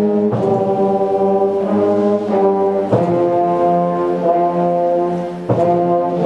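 Beginner school concert band playing: brass and woodwinds holding sustained chords that change every second or so, with a slight fade and then a fresh, louder chord about five and a half seconds in.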